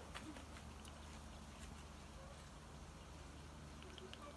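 Near silence: a faint, steady low background hum with a few faint ticks.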